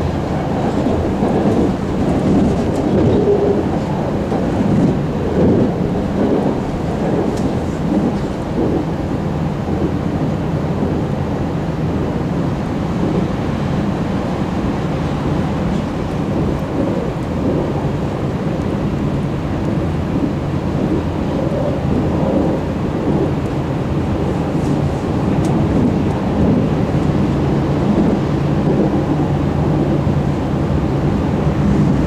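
Steady running noise of a BART train at speed, heard from inside the passenger car: wheels on rail with a low, even hum underneath.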